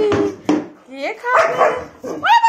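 German shepherd barking and yowling at the food table, begging for its food. A pitched call trails off at the start, a short bark follows about half a second in, and a rougher, louder bark-howl comes later in the second half.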